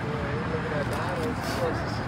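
Faint background voices over a steady hum of outdoor ambient noise.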